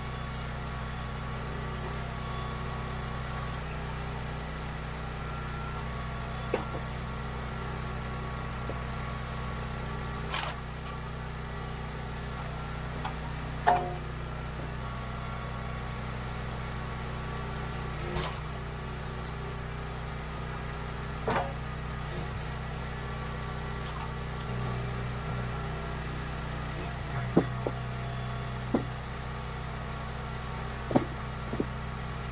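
Wolfe Ridge 28 Pro log splitter's small gas engine running steadily, with a handful of sharp knocks and cracks scattered through as split firewood is pushed off and handled on the steel table.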